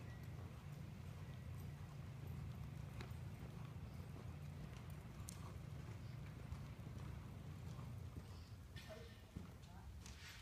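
Hoofbeats of a ridden horse moving around a dirt arena, over a steady low rumble.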